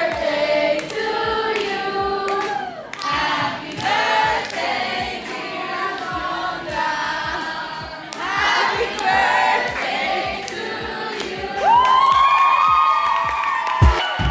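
A group of people singing a birthday song together, accompanied by hand clapping, ending on a long held note near the end.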